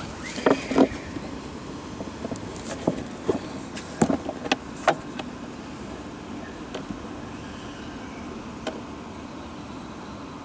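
A handful of sharp knocks and clicks from hands handling the open plastic hull and wiring of an RC boat, with the brushless motor not running, over a steady faint background noise.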